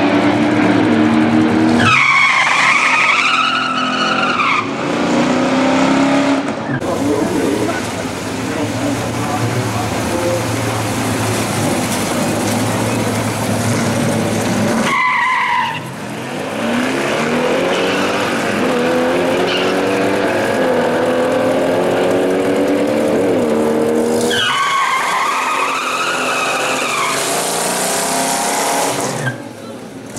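Buick 455 cubic-inch V8s revving hard during drag-strip burnouts, the pitch climbing as the revs rise. The street tires squeal in long wavering spells about two seconds in, around the middle and again from about three-quarters of the way through.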